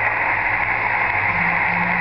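Steady hiss of receiver static from a Realistic HTX-100 SSB transceiver's speaker on the 27 MHz band, the open channel between two stations' transmissions, with a low hum underneath.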